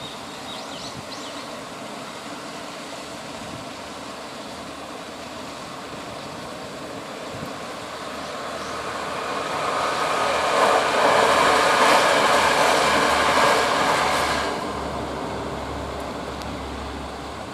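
A KTR8000 series diesel railcar train approaching and passing close by. Its engine and running noise swell for several seconds and are loudest near the end, then drop off sharply as it goes by. Steady rain hiss sits underneath.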